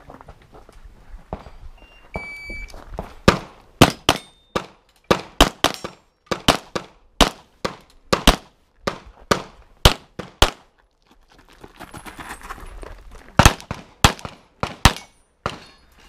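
An electronic shot timer gives one short beep. About a second later a pistol fires a fast string of about twenty shots over some seven seconds, many in quick pairs. After a pause of about three seconds it fires four or five more shots.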